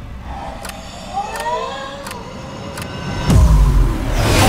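Horror-trailer sound design: a low rumble under a few sharp clicks and eerie rising tones, then a deep booming hit a little over three seconds in.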